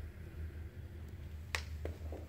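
A sharp click about one and a half seconds in, then a fainter one just after, over a low steady hum.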